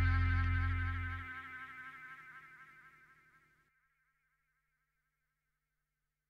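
Electronic track fading out at its end: a wavering synthesizer tone with fast vibrato over a bass drone. The bass drops away about a second in, and the synth tone fades out completely a little past halfway.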